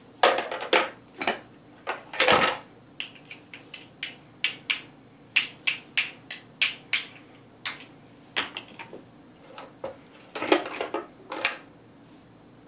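Hard plastic toy blocks and a plastic shape-sorter bucket clacking and knocking as they are handled, in irregular sharp knocks about one or two a second. The knocks come in louder flurries just after the start, around two seconds in and near the end.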